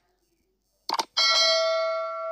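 Subscribe-button animation sound effects: a quick double click about a second in, then a notification-bell ding that rings on in several tones and slowly fades.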